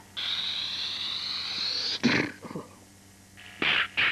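A mouth-made sound effect: a hissing screech, rising slightly in pitch, for about two seconds, cut off by a short sharp burst, then another burst near the end.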